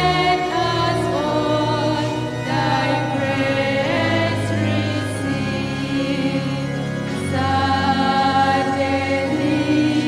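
A church choir singing a communion hymn over held low accompaniment notes that change every second or two.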